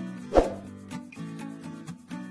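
Background music with a steady rhythmic beat, and a single brief, loud sound effect from the animated subscribe button about half a second in.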